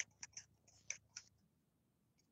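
Faint, irregular clicks of typing on a computer keyboard, several a second, stopping about a second and a half in.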